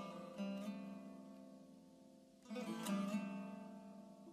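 Soft background music of plucked guitar: a gentle phrase about half a second in and another about two and a half seconds in, each ringing and fading away.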